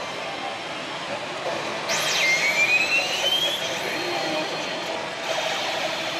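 Steady pachislot-parlor din of machines and chatter. About two seconds in, a slot machine's electronic sound effect cuts through: a quick swoop up and down, then a tone rising steadily for about a second and a half.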